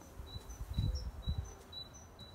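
A small bird chirping outdoors: short high notes, alternating between two pitches, repeated two or three times a second. Dull low thumps about a second in are the loudest sounds.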